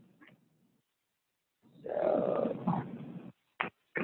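A drawn-out wordless vocal sound, about a second and a half long, starting about two seconds in, then a short click.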